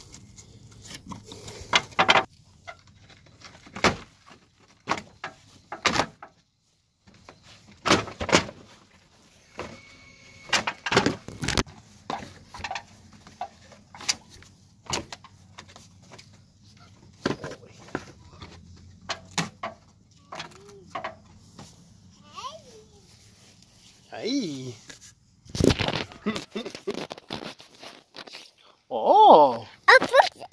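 Irregular sharp cracks, snaps and knocks as a busted lower trim piece on a Chevy Blazer's front bumper is wrenched and pulled off by hand. Near the end a baby makes short babbling sounds.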